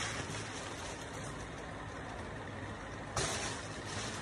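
Steady background noise, a hiss with a low hum beneath it, with one short burst of louder noise about three seconds in.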